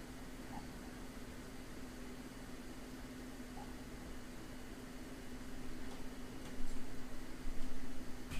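Room tone: a steady low hum with faint hiss. In the last couple of seconds, soft uneven rustling and a few faint clicks are heard.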